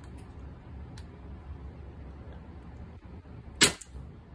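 A single shot from an HPA-powered Umarex HDR68 .68-calibre less-lethal marker with a 17-inch barrel, fired with a 10-gram round. The shot is a sharp pneumatic pop near the end, after a faint click about a second in.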